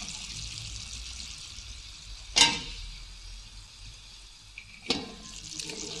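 Chicken pieces sizzling in a frying pan in a thickening sauce, a faint steady frying hiss. Two sharp clicks cut through it, about two and a half seconds in and again near the end.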